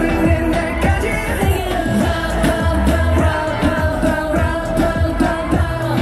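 K-pop song played loud through stage speakers: a sung vocal line with held, gliding notes over a steady bass and drum beat.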